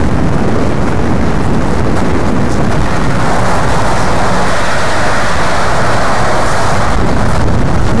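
Wind buffeting the microphone: a loud, steady rumbling noise that swells for a few seconds in the middle.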